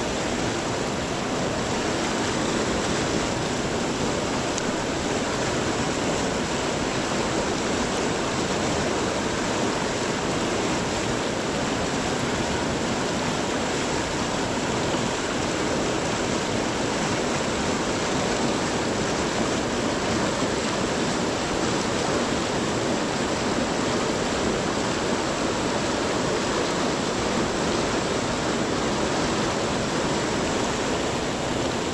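Small rocky river running fast through rapids: a steady, unbroken rush of white water.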